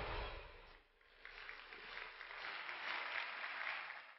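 Music fades out in the first second, then a studio audience applauds faintly.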